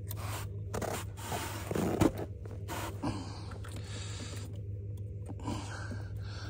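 Scraping and rustling of hands working battery connectors and wires inside a plastic rig box, with a sharp click about two seconds in, over a steady low hum.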